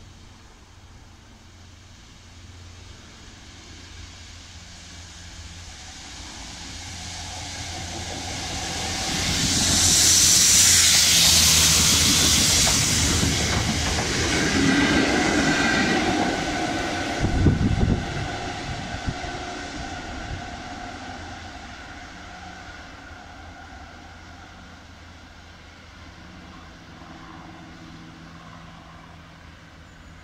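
A Freightliner Class 66 diesel locomotive hauling a rail head treatment train of tank wagons passes at speed. Engine and wheel-on-rail noise build over several seconds and peak with a strong hiss about ten seconds in. A sharp thump comes just before it fades away as the train clears.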